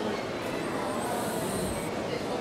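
Steady outdoor street noise with road traffic going by.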